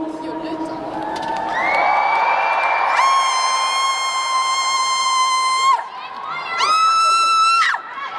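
Arena crowd cheering, with a fan close by screaming high-pitched: one long held scream of about three seconds, then a second, shorter scream that swoops up in pitch near the end.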